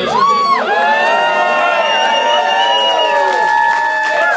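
Live rock audience cheering and whooping as a song ends, with a few long, steady high tones held over the cheering.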